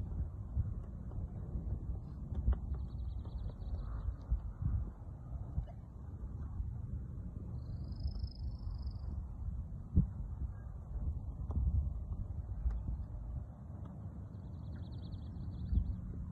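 Wind buffeting the microphone as a gusty low rumble, with two faint high trills about three seconds in and near the end.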